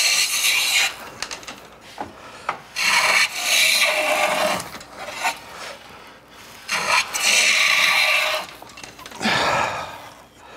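Stanley No. 8 jointer plane taking shavings along the edge of a figured neck blank: four long rasping strokes, each a second or two long. The freshly sharpened iron is cutting with the grain, the direction in which it cuts well in figured wood.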